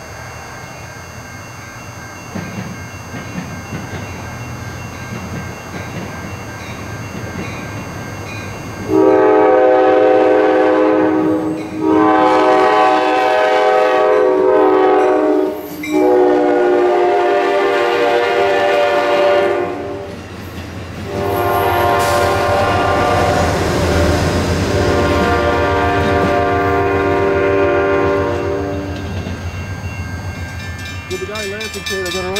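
An Amtrak passenger train's horn sounds four long blasts, the last held longest, as the train approaches and passes. Under the horn, the train's rumble and the clatter of its wheels on the rails grow as the cars go by.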